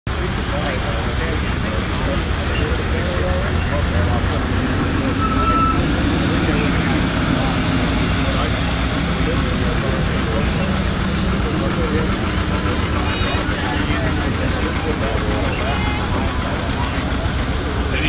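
A tractor engine running steadily, a low rumble at an even level, with people's voices faint in the background.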